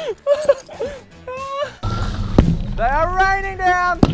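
Excited wordless yells and laughter from several men, with a single sharp thud about halfway through as a dropped object hits the ground, and one long drawn-out shout near the end.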